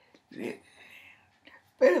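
A woman's voice: a short, soft, half-whispered utterance, then louder speech near the end ("Wait a…").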